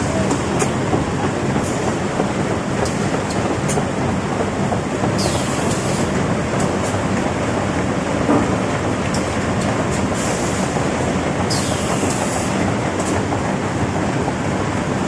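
Automatic folder-gluer for corrugated cartons running in production: a loud, steady mechanical noise, with a high hiss twice, about six seconds apart, and scattered sharp clicks.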